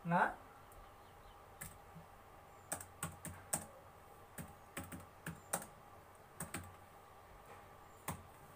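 Computer keyboard being typed on, about a dozen single keystrokes at a slow, uneven pace as a short sentence is entered letter by letter.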